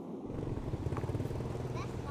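A small engine running steadily at an even pitch, a low hum with a fast firing rhythm that fades in just after the start.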